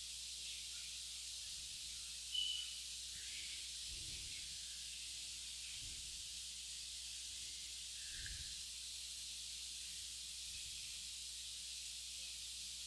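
Faint steady hiss of background recording noise, with one short high tone, like a beep, about two and a half seconds in.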